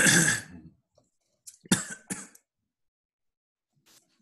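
A person coughing over a video-call connection: a loud cough at the start, then two shorter coughs about a second and a half and two seconds in.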